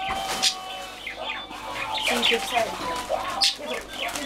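Several voices talking over one another, with brief crinkles of wrapping paper as a present is unwrapped.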